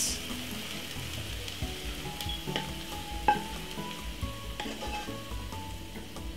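Hot stir-fried cabbage still sizzling as a wooden spoon scrapes and pushes it out of the pan into a bowl, with a few knocks of the spoon, the sharpest about three seconds in.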